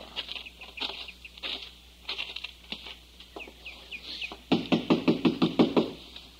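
Radio-drama sound effects: faint scattered clicks of steps, then a quick run of about eight knocks on a front door near the end.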